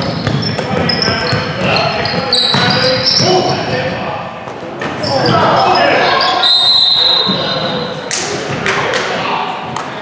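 Youth basketball game in a school gym: the ball bouncing on the hardwood floor, sneakers squeaking, and the voices of players and spectators. A short steady referee's whistle blast comes about six and a half seconds in.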